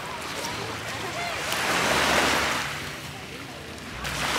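Small waves washing in on a pebbly, shell-strewn shore, one swell of surf rising and falling away about two seconds in.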